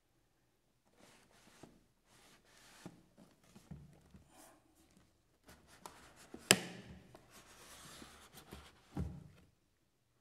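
A rigid cardboard gift box being slid out of its hard cardboard sleeve and handled: light rubbing, scraping and small clicks, with one sharp tap a little past the middle and a duller thump near the end.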